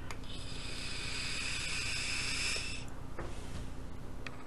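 Long hissing draw through the tank of a Vaporshark DNA 200 vape mod firing at 35 watts, lasting about two and a half seconds, followed by a softer breath as the vapor is exhaled.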